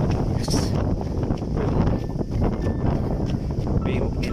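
Wind buffeting a handheld phone's microphone: a loud, uneven low rumble.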